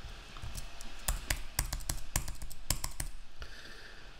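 Typing on a computer keyboard: a quick, irregular run of key clicks while a form is filled in, stopping a little before the end.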